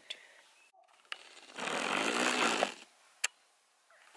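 A baby blowing a raspberry: a wet, buzzing lip trill with voice behind it, lasting about a second in the middle. A couple of short sharp clicks come before and after it.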